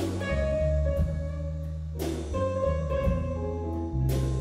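Live chamber-ensemble music: strings, keyboard and drum kit play held chords over a bass line. There is a cymbal crash at the start and another about halfway through.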